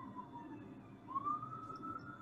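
A faint, thin tone that dips slightly, then about a second in glides up and holds steady, over a low background hum.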